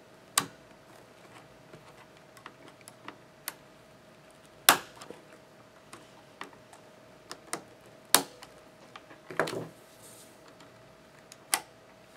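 Sharp plastic clicks as a mechanical keyboard's spacebar stabilizer bar is pushed and twisted into its stabilizer clips with a flat screwdriver: four loud clicks a few seconds apart, the loudest near the middle, with lighter ticks and scrapes between.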